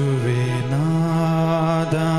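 A man's voice singing a long held note of a liturgical chant, with a steady keyboard accompaniment; the pitch steps up a little under a second in and the note is then held with a slight waver.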